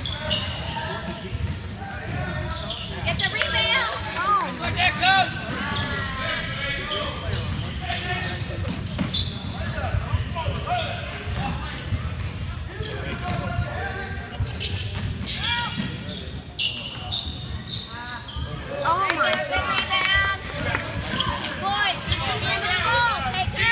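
Basketball game on a hardwood gym court: a ball bouncing and players running amid voices, all echoing in the large hall. Short high squeals come and go, thickest a few seconds in and again near the end.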